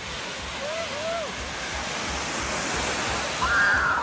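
Small waves washing onto a sandy beach, a steady rush that swells a little toward the end, with wind buffeting the microphone. Distant voices call out briefly about a second in and again near the end.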